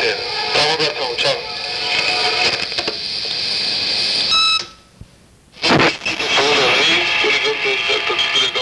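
Playback of recorded answering-machine messages: indistinct voices with music behind, cut about four seconds in by a short electronic beep, a second of near silence, then the next recording starts.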